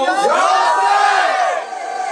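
A crowd of voices calling out together in one long shout that rises and falls in pitch, then fades about a second and a half in.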